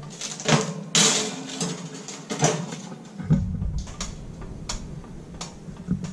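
Metal baking tray being slid into an oven, with clicks, knocks and a loud scrape about a second in, and the oven door being handled.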